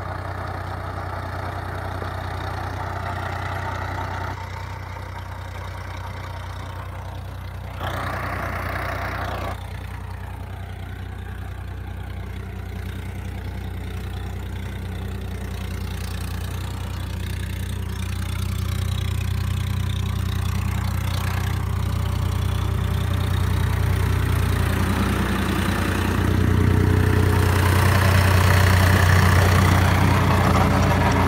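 Swaraj 963 FE tractor's 60 hp diesel engine running steadily under load while it drives a rotavator tilling the soil. It grows louder toward the end as the sound comes from close to the rotavator.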